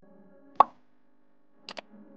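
Subscribe-animation sound effects: a sharp cartoon pop about half a second in as the like button is pressed, then a quick double mouse click near the end, over faint steady background music.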